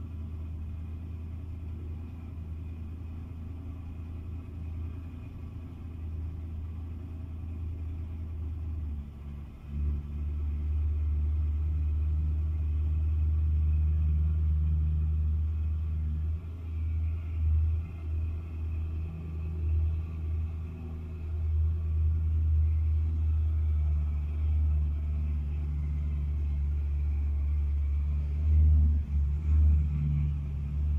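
Low engine rumble of a car being driven slowly along the steel lower deck of a car-carrier trailer. It gets louder about a third of the way in, then swells and fades several times.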